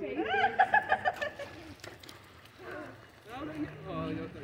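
Children's high-pitched voices calling out without clear words, in two stretches, first right at the start and again about three seconds in, with a few light clicks in between.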